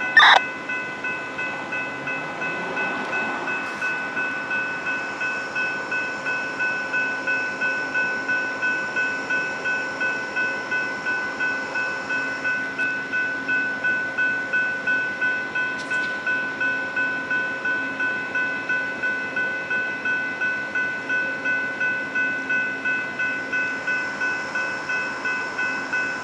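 Railroad grade-crossing warning bell ringing steadily at about two strokes a second, with a low steady hum underneath.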